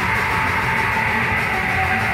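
Recorded extreme metal (blackened hardcore/death metal) with heavy distorted electric guitars playing continuously, with a held high note that steps down slightly about one and a half seconds in.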